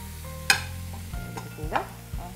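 A metal spoon clinks once against a stainless-steel frying pan about half a second in, over a soft sizzle of onion-tomato masala frying as spices are stirred in.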